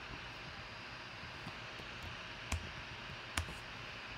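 Two sharp clicks about a second apart at a computer, with a fainter click before them, over steady low hiss. They are the clicks of copying a spreadsheet cell and pasting it into the row below.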